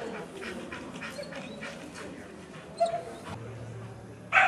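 A dog barks once, briefly, about three seconds in. A low steady hum starts shortly after.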